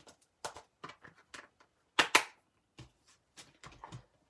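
Hands handling a cling rubber stamp set in its clear plastic case: a string of small clicks and taps as a stamp is picked off the sheet, with two louder snaps close together about two seconds in.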